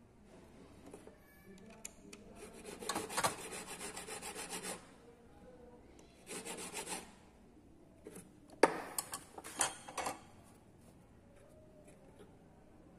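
Hand file scraping the edge of a 16k gold ring held against a wooden bench pin, in three spells of quick short strokes. A sharp click starts the last spell.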